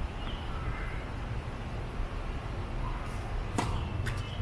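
A tennis serve: the racket strikes the ball once with a single sharp pock near the end, over a steady low background rumble.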